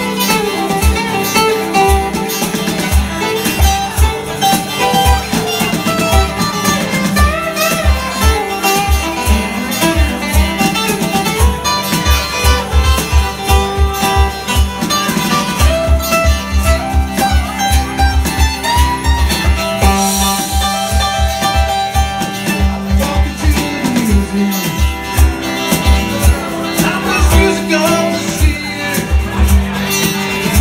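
Live band music: two acoustic guitars playing over a drum kit with a steady kick-drum beat, with a cymbal wash about two-thirds of the way through.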